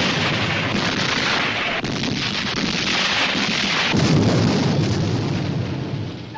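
Cannon fire and explosions from a film battle scene: overlapping blasts and rumbling that run on without a break and swell loudest about four seconds in.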